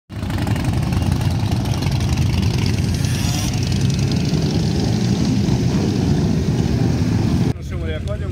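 Many motorcycles riding slowly past in a column, their engines running together in a dense low sound. It cuts off suddenly near the end, and a man's voice follows.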